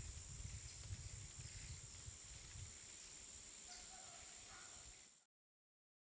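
Near silence: a faint background hum with a thin steady high tone, cutting off to dead silence about five seconds in.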